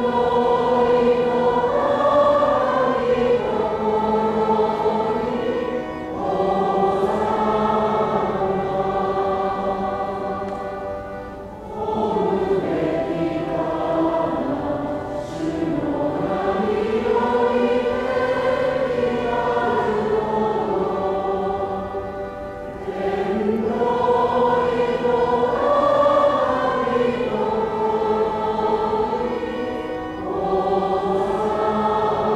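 A choir singing slow, sustained phrases, with short breaks between phrases about every six to eleven seconds.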